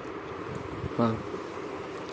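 A steady low buzz or hum in the background, with one short spoken word about a second in.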